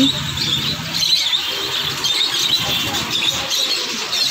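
A flock of small caged birds in a pet shop chirping and twittering all together: a dense, continuous high chatter of many overlapping short calls.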